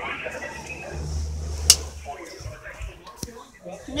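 Faint, muffled speech in the background, with a low rumble for about a second and a sharp click near the middle, then a second, weaker click later on.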